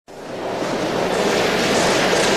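A steady rushing noise, like surf or wind, fading in over about the first half-second and then holding.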